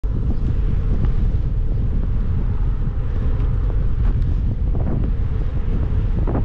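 Wind buffeting the microphone of a camera on a moving bicycle, a steady, heavy low rumble.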